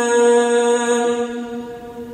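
Male Quran reciter holding the long, drawn-out final vowel at the close of a verse as one steady chanted note, fading away near the end.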